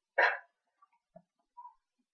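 A single short dog bark shortly after the start, followed by a few faint small sounds.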